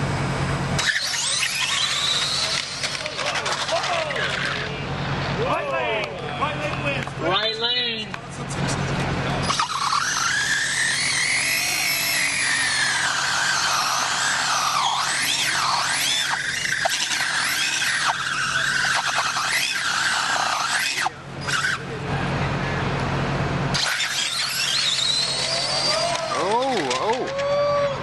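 1/10-scale electric RC drag cars running at the start line, their motors whining in long rises and falls of pitch, over people talking in the background.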